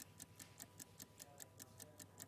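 Faint, rapid ticking of a countdown-clock sound effect, about five evenly spaced ticks a second.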